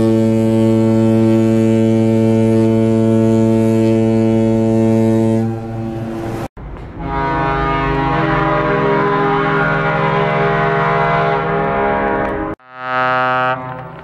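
Ship horns of car ferries, edited together. A long steady blast from the Washington State ferry Elwha ends about five and a half seconds in. After a cut comes a long blast from the BC Ferries vessel Queen of Cowichan, lasting about five seconds. Near the end there is one short blast from the ferry Chelan.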